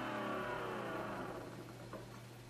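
The last chord of rock background music with electric guitar ringing out and fading away over about a second and a half, over a steady low hum.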